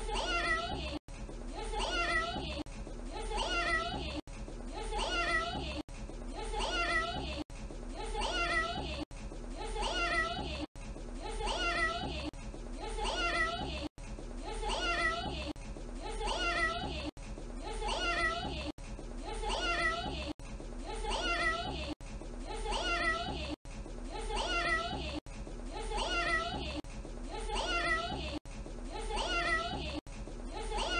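A toddler saying a cat-like "meow", the same short clip looped over and over: about one meow every second and a half, with a tiny break at each loop point.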